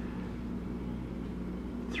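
Room tone: a steady low hum with faint background noise.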